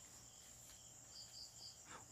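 Near silence: faint background hiss with a thin steady high tone, and three short faint high chirps a little over a second in.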